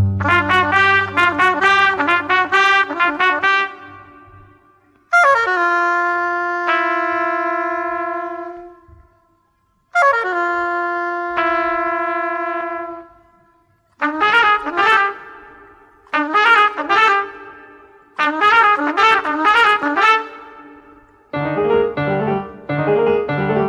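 Film-score music led by a trumpet. It opens with a fast run of notes, then plays two phrases that slide down into long held notes, each fading to a short silence, and ends with four short, quick bursts of notes.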